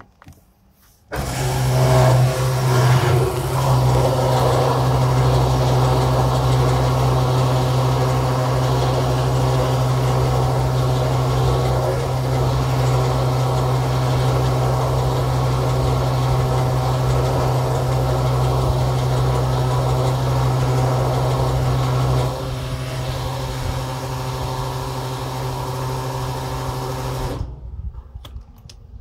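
Petrol pump dispensing fuel: the dispenser's pump motor hums steadily and petrol rushes through the nozzle into the car's tank, starting about a second in. The sound drops somewhat a few seconds before the end, then cuts off suddenly as the pump stops at the prepaid €20.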